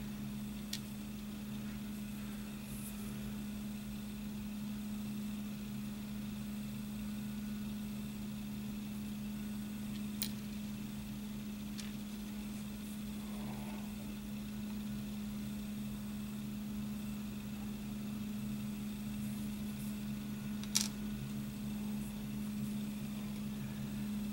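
Steady low mechanical hum, with a few faint, sharp clicks of small plastic model-kit parts being handled.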